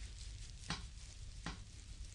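Oiled hands kneading and pressing the sole of a bare foot in a close binaural recording: soft, wet skin-on-skin rubbing, with two sharper smacks under a second apart.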